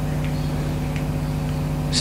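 A steady low hum with a faint background hiss, unchanging throughout.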